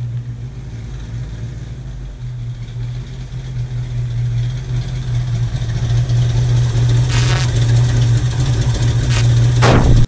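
1966 Ford Mustang's V8 engine running at low speed as the car rolls up, a steady low hum that grows louder as it nears. Just before the end comes a brief rising rush, and the sound cuts off suddenly.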